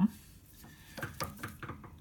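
A few light clicks and taps in the second half, from a lever-type dial test indicator being handled and its stylus brought against a steel bar.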